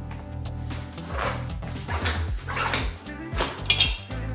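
Background music over rubbery squeaks from a 16 × 1.50 bicycle tyre being worked off its wheel rim by hand. Several short squeaks; the loudest and shrillest comes near the end.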